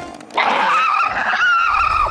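Squeaky cartoon insect voice effect for the animated red ants: a wavering high squeal starting about half a second in and lasting just over a second.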